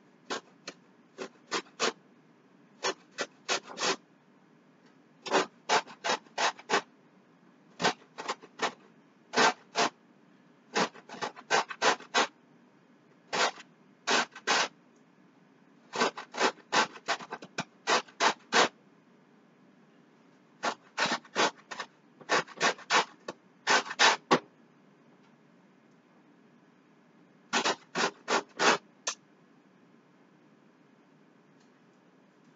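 A lemon being zested on a metal box grater: short, sharp scraping strokes in runs of three to six with brief pauses between runs, stopping about a second before the end.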